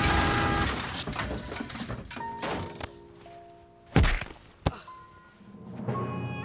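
Film score with held tones fading away, then a heavy thud about four seconds in and a second, sharper knock a little over half a second later: crash sound effects for a collision. Music starts up again near the end.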